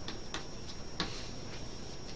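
Chalk tapping and clicking against a blackboard as it writes: four short, sharp ticks in about a second, over a faint steady high-pitched whine.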